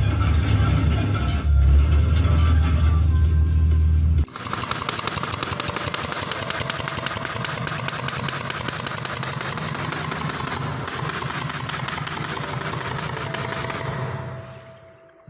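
For about four seconds, a racing video game plays with music and a bass-heavy car engine. It cuts abruptly to a handheld power tool held against a ceiling, running steadily with a fast, even rattle.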